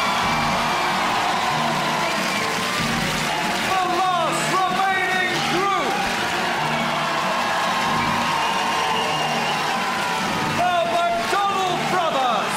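Studio audience cheering and whooping over music, with clusters of high whoops about four to six seconds in and again near the end.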